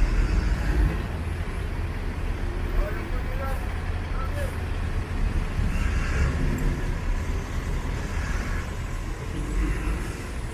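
Road traffic: cars and vans driving past, a steady low rumble.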